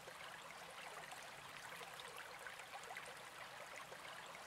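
Faint steady hiss with no distinct events, its energy mostly in the upper range.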